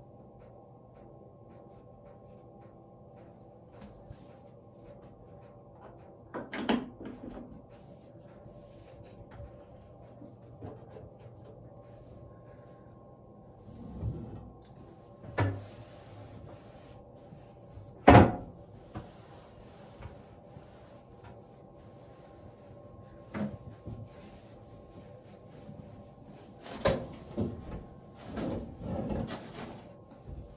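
A handful of separate knocks and clunks of a bathroom vanity cabinet door and toiletries being handled, the loudest about two-thirds of the way through and a cluster near the end, over a steady low hum.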